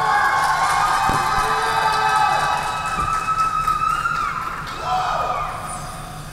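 Rink spectators cheering with long, high whoops and calls as the skater takes the ice, fading out near the end, with two sharp knocks about one and three seconds in.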